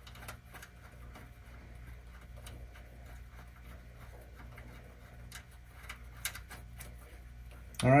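Faint, scattered metal clicks and ticks from a nitrogen fill-hose fitting being threaded by hand onto the Schrader valve of an ORI strut, over a low steady hum.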